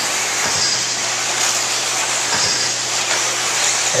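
1/8-scale electric RC buggies running on an indoor dirt track: a steady wash of noise with a faint high motor whine that comes and goes.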